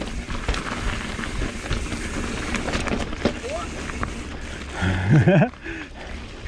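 Mountain bike riding down a dirt singletrack: a steady rush of tyres on dirt and wind, with many small rattling clicks from the bike. A short wordless shout comes about five seconds in.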